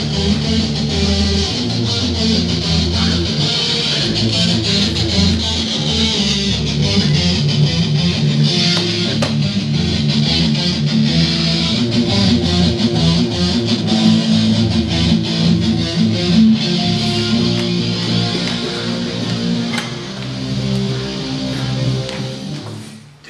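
A hardcore band playing loudly: distorted electric guitars with bass guitar and steady drum hits.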